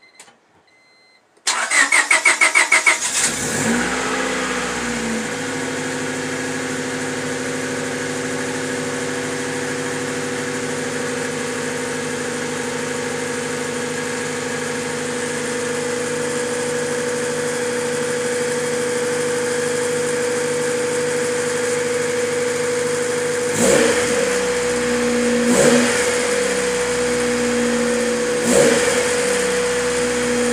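Freshly swapped-in Honda B16A2 1.6-litre DOHC VTEC four-cylinder engine cranking for about a second and a half, catching, and settling into a steady idle. Three brief revs come in the last few seconds.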